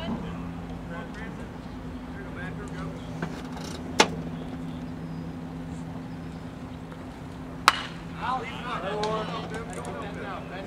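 A baseball pitch smacking into the catcher's leather mitt with a sharp pop about three-quarters of the way through, the loudest sound, after an earlier, smaller crack. A steady low two-tone hum runs underneath throughout, and voices chatter near the end.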